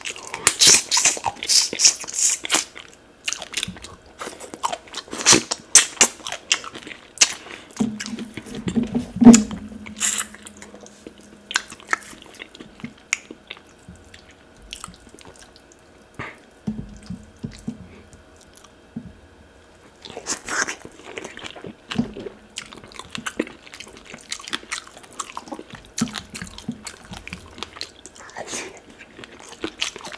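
Close-up eating sounds: wet chewing, lip smacking and mouth clicks as soft tilapia fish in pepper soup is eaten by hand, in a rapid run of short smacks, busiest in the first ten seconds.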